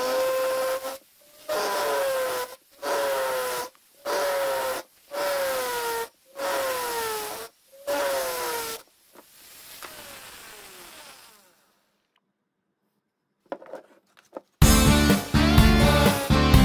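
Flex-shaft rotary tool carving cherry wood: about seven bursts of about a second each, each a grinding whine that drops in pitch, then a fainter whine falling away around ten seconds in. Loud guitar music starts near the end.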